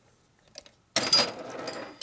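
Rapid metallic clicking and clatter starting about a second in, from a wrench being worked on the shaft nut of a Harley-Davidson four-speed transmission.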